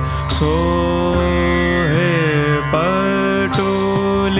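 Indian devotional song (bhajan): a melody of long held notes that slide between pitches, over a steady low accompaniment.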